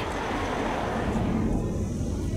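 A passing road vehicle: a steady rush of tyre and engine noise with a low rumble, its upper hiss dying away about halfway through as it moves off.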